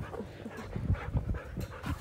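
A dog panting in short, uneven breaths.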